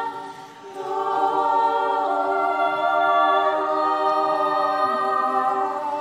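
A choir singing a slow hymn in long, held chords, with a brief breath between phrases about half a second in.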